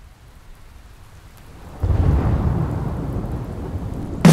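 A thunder-and-rain sound effect on a vinyl record: a faint rain-like hiss, then a loud rolling thunder rumble that breaks about two seconds in and slowly fades.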